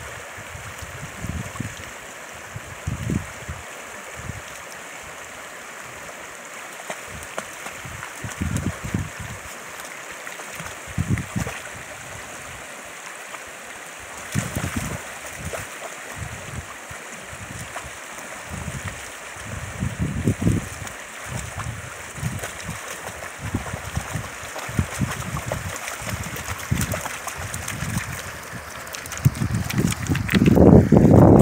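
Shallow, rocky creek running steadily over stones, with irregular low rumbles now and then.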